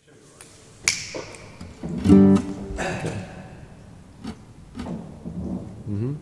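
Acoustic guitar played slowly, one strum or chord at a time, each left to ring out; the first comes about a second in.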